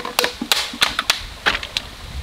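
Dry split-bamboo sticks clattering and knocking against each other and the hearth as they are laid on a cooking fire: a quick, irregular run of sharp wooden clicks.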